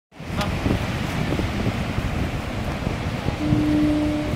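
Steady roar of Niagara Falls mixed with wind buffeting the microphone, rumbling and uneven. A steady hum-like tone joins in near the end.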